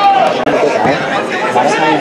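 Spectators' voices talking over one another close to the microphone, with a momentary cut-out about half a second in.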